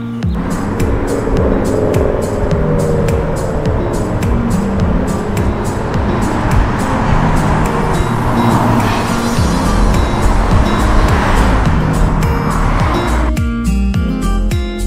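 Road noise from a car driving along a road, under background music with a steady beat; the road noise cuts off sharply near the end while the music carries on.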